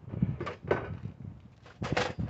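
A few short clicks and knocks, the loudest near the end.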